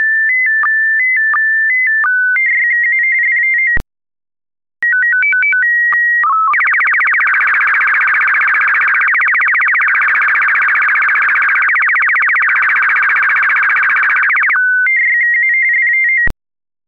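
Slow-scan TV (SSTV) radio transmission audio. Pure whistling tones step between a few pitches, then break off for about a second. A short sequence of stepped tones and a held tone follows, the calibration header that opens an image. Then comes about eight seconds of fast, raspy, evenly pulsed scan-line signal carrying the picture, and stepping tones return near the end.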